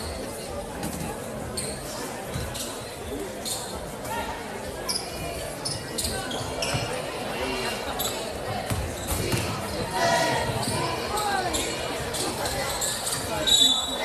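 A basketball being dribbled on a hardwood court, with the voices of players and spectators echoing around a large gym. A brief shrill tone near the end is the loudest moment.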